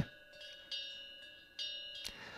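Two faint bell-like rings about a second apart, each a cluster of high tones that rings on briefly and fades.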